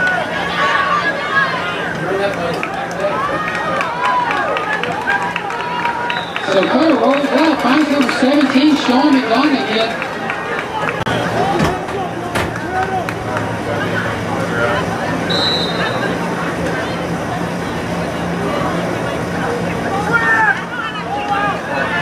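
Crowd of spectators at a football game, talking and calling out over one another. About a third of the way in, one voice holds a long wavering call for about three seconds. A short high whistle sounds past the middle.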